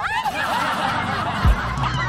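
A group of young women squealing and laughing excitedly over one another. Music with a deep thumping beat comes in about one and a half seconds in.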